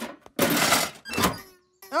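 Cartoon sound effect of a broken-down little car's engine being tried: a click, then a loud noisy splutter and a shorter second one that dies away. The car doesn't sound good: it is not running properly.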